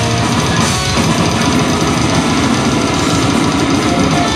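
Metal band playing live: heavily distorted electric guitars and bass over fast, dense drumming, without a break.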